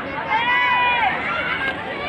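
Chatter of a crowd of people in the background, with one high-pitched voice calling out, rising and then falling, from about a third of a second to a second in.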